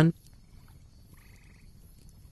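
Faint background ambience with a short pulsed croaking call lasting about half a second, just over a second in, after a narrator's last word ends.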